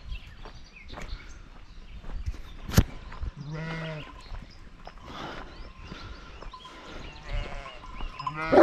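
Sheep bleating in a pen: one clear bleat a little after the middle, with fainter bleats after it. A single sharp knock comes just before the clear bleat.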